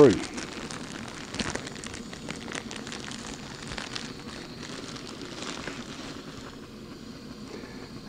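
Small gas-canister backpacking stove burning with a steady hiss under a steel canteen cup of water and coffee grounds, with scattered light ticks and pops as the water heats toward a boil.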